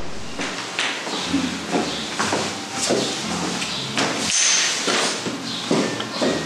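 Wooden Jenga blocks knocking as they are handled and stacked into a tower on a glass tabletop: a series of irregular sharp clacks.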